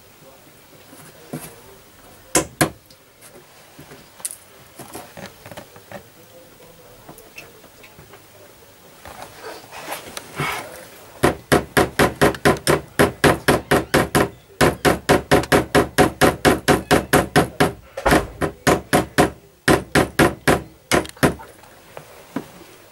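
Small pin hammer tapping track pins through model railway track into cork. There are two taps a couple of seconds in, then from about halfway a fast, even run of taps, about four a second, with a few short pauses.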